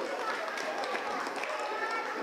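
Indistinct voices of several people talking in the room, with no words clear enough to make out.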